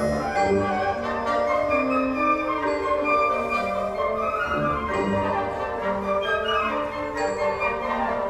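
Symphonic wind band playing: woodwinds and brass sustaining chords that move from note to note, with no break.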